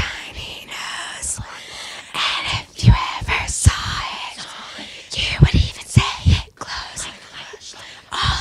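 Hushed whispering voices of a small group, broken by several loud, short, low thumps.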